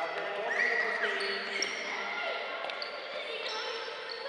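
Children's voices overlapping and echoing in a large gym hall, with sneakers squeaking and scuffing on the wooden floor as they move about.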